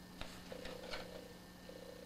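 Faint purring of a domestic cat that stops briefly and resumes near the end, with a few soft taps.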